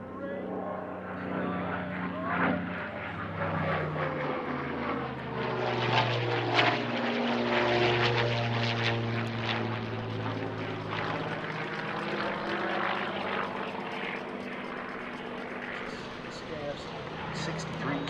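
Bell P-63 KingCobra fighter's Allison V-12 engine and propeller passing overhead. The engine note swells to its loudest about six to nine seconds in, drops in pitch as the plane goes by, then fades.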